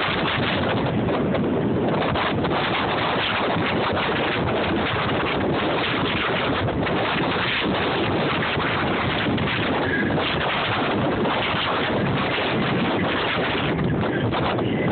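Steady wind buffeting a phone's microphone on the open-air car of a moving train, with the train's running noise beneath it.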